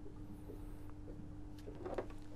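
Quiet room tone with a steady low hum and a few faint light ticks.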